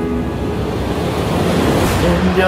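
Transition in a pop song's backing track between sung lines: a held note fades out and a swell of noise builds up, like a riser or reverse cymbal, leading into the next vocal line.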